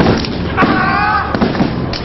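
Step team's stomps and claps, sharp irregular strikes of a stepping routine, with one voice calling out in the middle.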